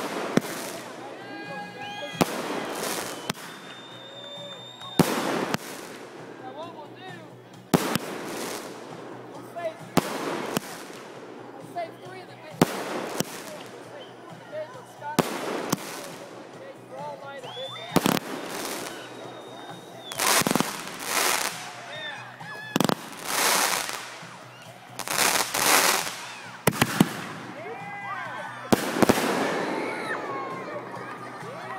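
Consumer aerial fireworks going off: a sharp bang about every two and a half seconds, about a dozen in all, with whistling tones between some of the shots.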